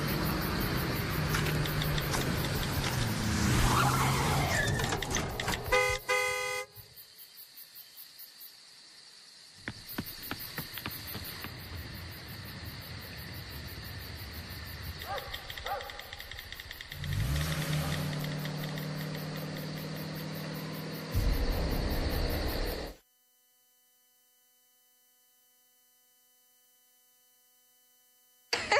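Car sounds on a TV commercial soundtrack: a vehicle running, with a car horn blast about six seconds in. Quieter sounds and a low steady tone follow, then near silence for the last five seconds.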